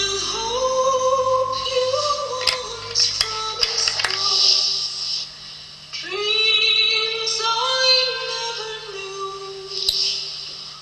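A woman singing long, held notes in two phrases with a short pause between them, and a few sharp taps during the first phrase.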